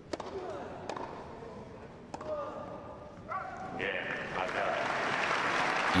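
Tennis ball struck by a racket on a serve, with a couple more sharp ball strikes in the next two seconds. Crowd applause then builds from about three seconds in and grows louder towards the end.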